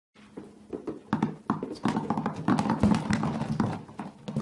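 Many apples dropping onto a hard surface and bouncing, making irregular knocks. The knocks start sparse, build to a dense clatter in the middle and thin out near the end. A faint steady low hum runs underneath.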